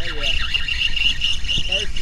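Fishing reel drag whining steadily as a hooked red drum pulls line off the reel, a high thin buzz that stops just before the end.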